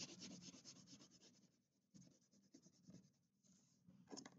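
Faint crayon strokes on paper: quick back-and-forth scribbling that thins out after about a second into a few scattered strokes.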